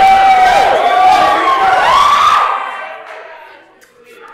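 Live audience cheering and whooping, with several yells sliding up and down in pitch. The cheering dies away to quiet about two and a half seconds in.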